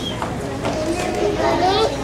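Young children's voices, speaking in a reverberant hall.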